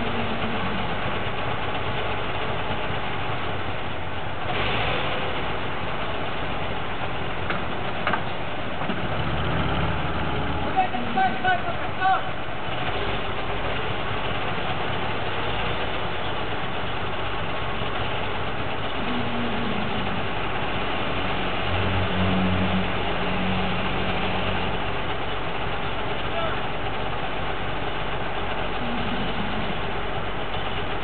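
Heavy diesel engines of a MAZ-5549 dump truck and a TO-18 wheel loader idling steadily.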